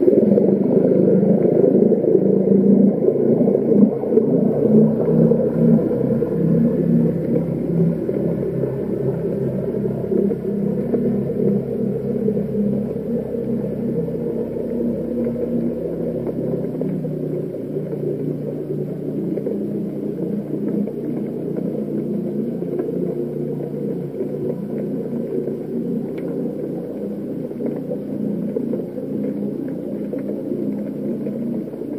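A low, steady engine drone, typical of a boat's motor and propeller heard through the water at the seabed camera. It comes in suddenly, and its deepest part fades out after about 17 seconds.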